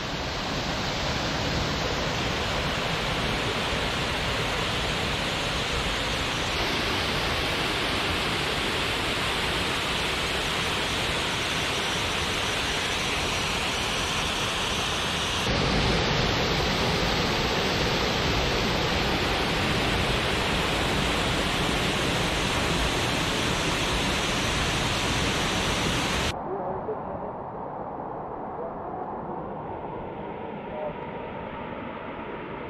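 Small waterfall pouring over rock ledges into a pool: a steady, loud rush of water. About 26 seconds in it cuts off abruptly to a much quieter, duller background.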